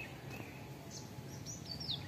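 Birds chirping among trees: a couple of short calls near the start and a quick run of falling chirps near the end, over a steady low background hum.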